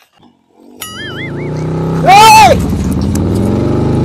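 Small motorcycle engine starting and then running, growing steadily louder, with a brief wavering high tone as it starts. About halfway through, a loud drawn-out voice call rises and falls over it.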